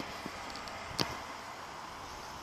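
Steady outdoor background noise with two sharp clicks, one at the start and one about a second in, and a fainter tick between them.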